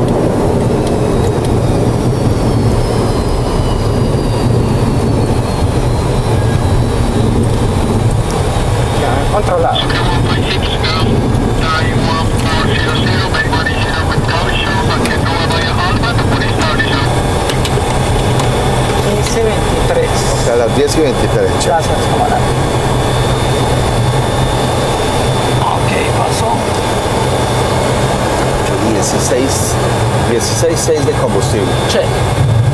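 Boeing 737 jet engines at low power, heard from inside the cockpit while the airliner rolls and taxis: a steady low hum, with a high whine that slowly falls in pitch over the first few seconds. Bouts of rattling come from the cockpit around the middle.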